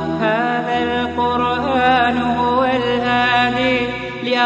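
Arabic nasheed interlude: a voice sings a gliding, ornamented melody without words over a low held drone. The drone steps down in pitch about two and a half seconds in.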